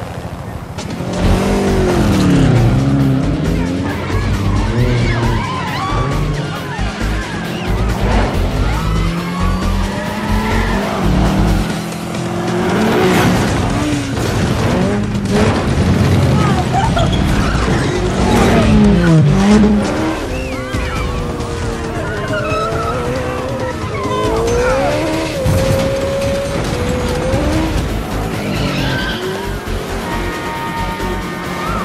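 Film chase soundtrack: Mini Cooper engines revving hard, their pitch rising and falling through the gears, with tyres squealing and a few sharp thumps, over score music.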